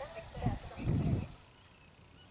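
Hoofbeats of a horse cantering on grass turf: a couple of low, dull thuds, the heavier one about a second in, under faint voices.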